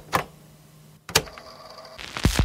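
A quick pair of sharp clicks at the start and a single click about a second later, with faint background between.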